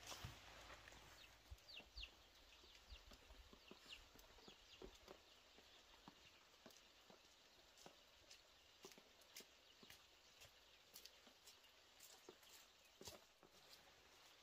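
Near silence: faint outdoor ambience with scattered soft clicks and a few faint high bird chirps about a second and a half in.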